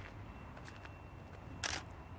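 A single camera shutter click about one and a half seconds in, a short sharp snap with a faint second click right after it, over a low steady hum.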